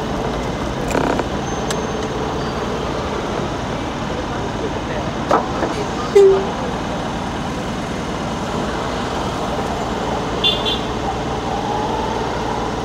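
Steady road and engine noise heard from inside a slowly moving vehicle, with a brief horn toot about six seconds in.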